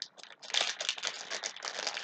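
Yu-Gi-Oh booster pack wrapper and cards being handled, a dense run of small crinkles and rustles.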